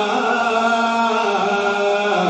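A man's voice singing a Punjabi naat through a microphone, holding long, steady notes in a melismatic devotional style.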